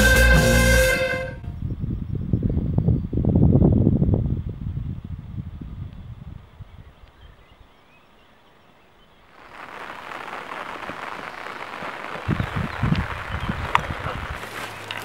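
Background music cuts off about a second in. Low wind rumble on the microphone follows and fades to a near-quiet lull. From about halfway a steady outdoor hiss sets in, with a few low thumps near the end.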